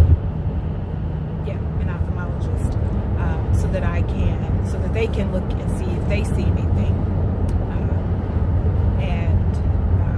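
Steady low rumble of a car, heard from inside the cabin, with a voice talking faintly over it in places.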